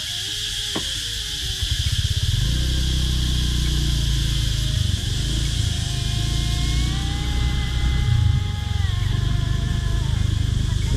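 Cicadas droning steadily and high in the roadside trees. From about two seconds in, a motorbike engine runs low underneath them.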